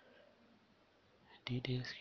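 Near silence with faint hiss, then a voice starts speaking about one and a half seconds in.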